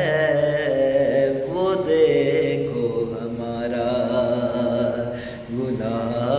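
A man singing a naat solo: an Urdu devotional song in long, wavering held notes that glide between pitches, with a short breath about five and a half seconds in.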